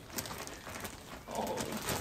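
Clear plastic wrapping rustling and crinkling as a large plush toy is handled inside it, joined about a second and a half in by a soft, low vocal sound.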